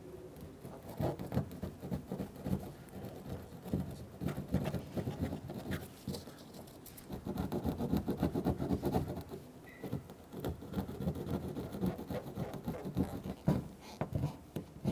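Plastic trim tool scraping leftover double-sided tape and glue residue off a pickup truck's painted door in quick, uneven strokes. The scraping comes in bursts with short pauses between them.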